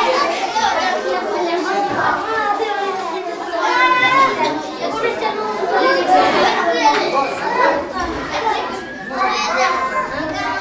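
A group of young children chattering and calling out over one another, several voices at once.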